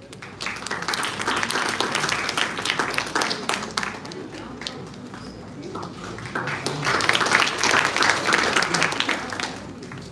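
Audience applauding in two rounds of clapping. The first dies down about four seconds in; a second swells about two seconds later and fades near the end.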